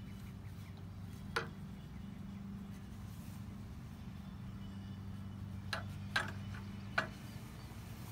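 A steady low hum runs under a few short, sharp sounds: one about one and a half seconds in, then three more close together between about five and a half and seven seconds.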